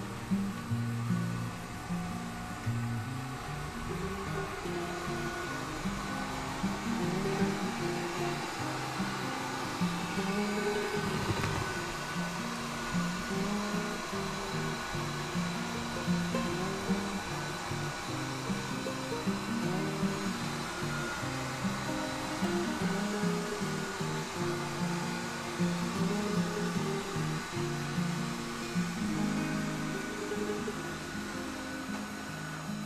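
Steady whirring of a robot vacuum cleaner's motor, with a constant high whine, under background music with a plucked melody.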